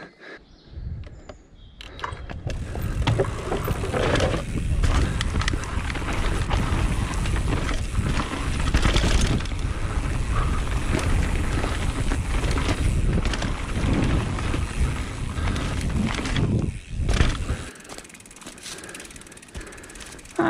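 Mountain bike ridden fast down a dirt woodland trail: a continuous rumble of tyres and rushing air, broken by rattles and clicks from the bike. It builds up a couple of seconds in and drops away near the end, just after a sharp knock.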